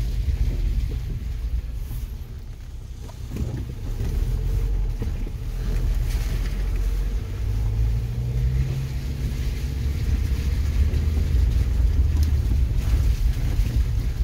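Low, steady rumble of a car's engine and tyres on a rough, wet dirt road, heard from inside the cabin. It eases briefly about two seconds in.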